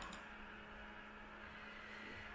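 Faint room tone with a steady low electrical hum.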